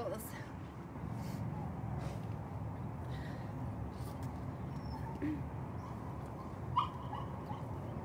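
A puppy whimpering now and then, with a short sharp yip near the end that is the loudest sound, over a steady outdoor background hiss.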